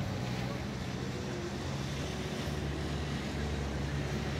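A steady low hum under faint, distant voices.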